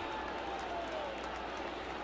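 Ballpark crowd noise, a steady even din with some applause.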